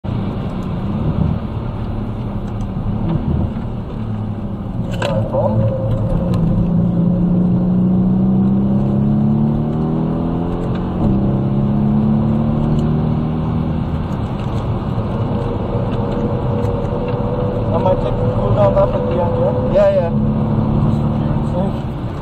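Mercedes-AMG C63's engine heard from inside the cabin under hard acceleration on track, its note climbing in pitch, dropping back at an upshift about halfway through, then climbing again.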